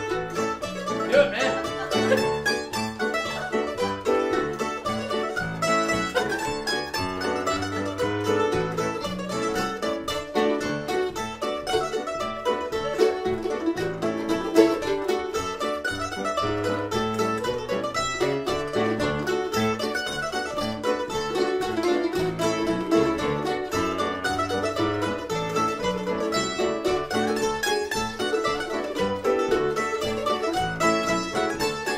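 Several mandolins picking an old-time tune together at a steady, driving tempo, one dense run of notes with no pauses.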